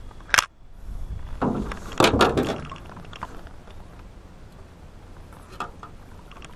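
Sharp knocks and handling noise while a hooked fish is landed into a small boat: one loud click about half a second in, then a burst of knocking and rustling around two seconds in, over a low rumble.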